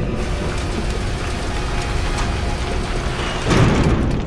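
Mechanical ratcheting and clattering of a motorized pool cover closing over the pool, with a louder surge near the end.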